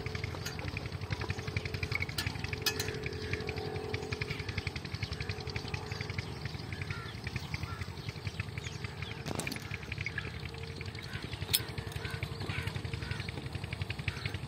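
Motorcycle engine idling steadily with a rapid, even beat, with a few sharp clicks on top.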